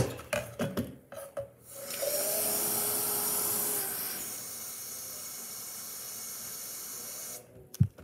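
Bathroom sink tap running water into a plastic O2COOL misting-fan water bottle, starting about two seconds in after a few clicks of handling the bottle. The flow is louder at first, settles to a quieter steady stream, and is shut off shortly before the end.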